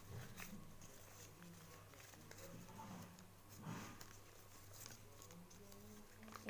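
Near silence: faint crackles of a folded-paper flapping bird being worked by hand, over a steady low hum.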